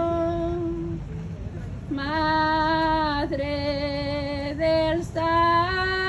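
A woman singing a Marian hymn unaccompanied, drawing out long held notes. She pauses for breath about a second in, then sings on, with short breaks between phrases.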